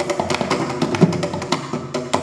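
Mridangam played fast in a Carnatic thani avarthanam (percussion solo): a dense run of crisp strokes, with deep bass strokes that bend in pitch.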